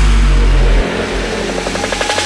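Drum and bass music in a breakdown. The drums drop out, leaving a held bass note that falls away about a second in under a noisy wash, with a quick run of short repeated tones building through the second half.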